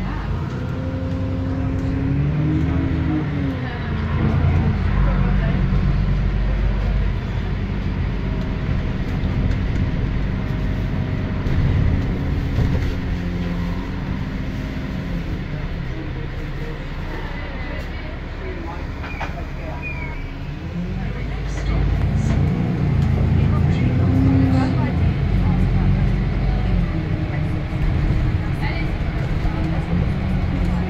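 Dennis E40D double-decker bus's diesel engine and drivetrain heard from the upper deck while driving, the engine note rising and falling several times as it pulls and eases off, loudest about four seconds in and again from about 22 seconds in.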